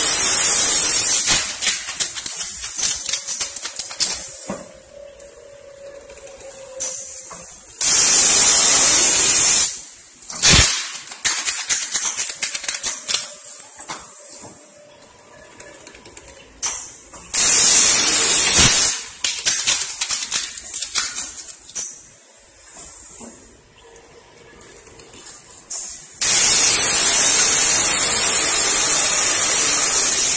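Four-colour pneumatic pad printer for shoe parts cycling: loud bursts of air hiss lasting two to four seconds recur about every nine seconds, with clicks and clatter from the moving pads and fixtures in between.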